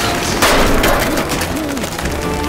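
A crash with splintering and clattering debris about half a second in, as a body smashes through metal drying racks on a building wall. It is film sound effects.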